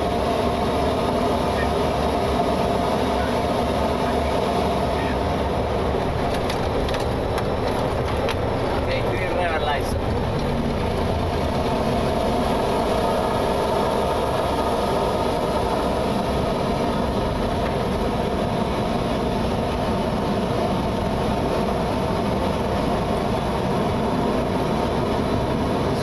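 Cockpit noise of a Boeing 727-200 landing: the steady sound of its Pratt & Whitney JT8D engines and rushing air on short final, touchdown and rollout along the runway. There are a few brief knocks about six to ten seconds in, as the wheels meet the runway.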